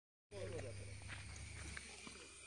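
A split second of dead silence at an edit cut, then faint distant voices over a low outdoor rumble.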